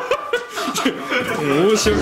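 People talking and chuckling, with a laugh that rises and falls in pitch. A steady low background tone comes in near the end.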